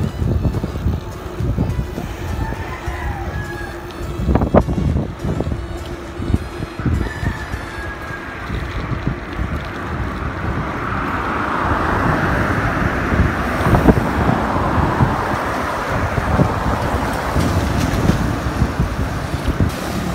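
Strong wind buffeting the microphone of a camera carried on a moving bicycle, a steady low rumble throughout. A vehicle's rush swells about halfway through and fades a few seconds later.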